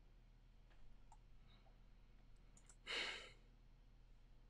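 Near silence with a few faint clicks, then a man's short breathy sigh about three seconds in.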